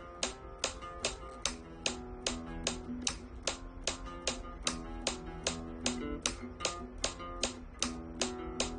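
Flamenco guitar played with the thumb (pulgar), single bass-string notes ringing over a metronome that clicks sharply about two and a half times a second. The clicks are the loudest sounds, and the metronome is set to speed up slowly, from about 146 to 154 beats a minute.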